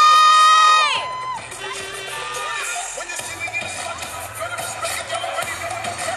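Dance music played loud over a hall sound system while a crowd cheers. The music opens with a loud high tone that glides up, holds for about a second and drops away; a steady beat then comes in about three seconds in, under the cheering.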